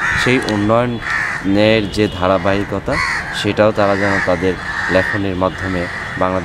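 Crows cawing repeatedly in the background over a man's speech.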